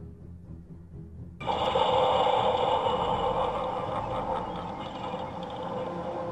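Quiet low music fades out. About a second and a half in, it gives way abruptly to a model train running on its layout: a steady hissing rush with a faint flutter.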